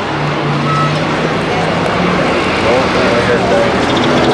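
Race truck engines running at speed around a short oval track, a dense, steady noise with one held engine tone through the first half.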